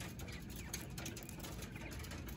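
Faint steady background noise with no distinct sound in it.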